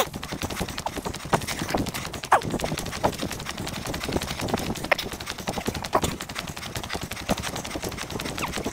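Running footsteps on a tarmac path: a quick, steady run of shoe strikes with scattered clicks and knocks.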